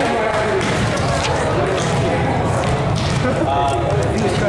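Indistinct talking of several players and spectators in a gymnasium, with a few sharp knocks of a ball bouncing on the court floor.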